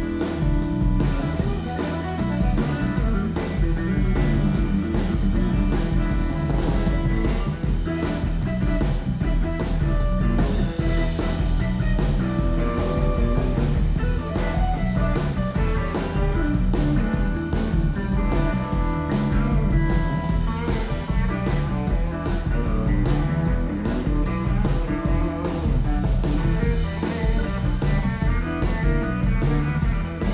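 Live blues-rock band playing an instrumental stretch: electric guitar over bass and a steady drum beat.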